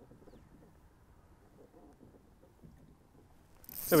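Near quiet for most of it, then near the end a spinning reel's drag suddenly starts buzzing as a fish strikes the trolled lure and pulls line off the loosened drag.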